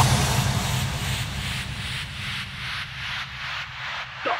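Hardstyle music in a breakdown after the kicks drop out: a hissing noise wash pulsing about two to three times a second over a low held bass, slowly fading.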